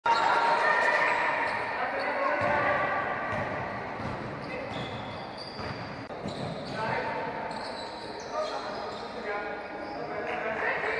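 Basketball bouncing on a gym floor, with players' voices in a sports hall.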